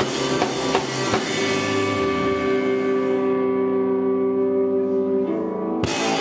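Live rock band of electric guitar, bass guitar and drum kit crashing in together on one loud hit, the chord left ringing while the cymbal wash fades over a few seconds. Just before the end the drums and band come back in hard.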